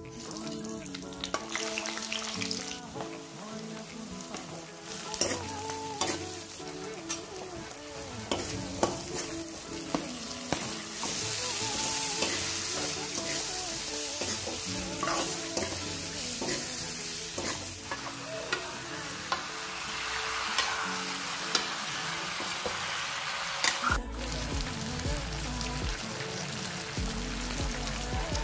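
Bay leaves and spices frying in hot oil, then meat, onions and tomatoes sizzling in a kadai while a metal spatula stirs and scrapes the pan, with occasional sharp knocks of the spatula against the metal. Soft music runs underneath.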